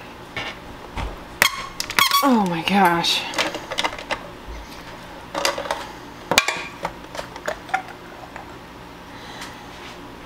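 Plastic parts of a food mill attachment on a stand mixer squeaking, knocking and clicking as the attachment is twisted apart and its strainer screen is pulled off. A few squeaks falling in pitch come about two seconds in, and a sharp click about six seconds in.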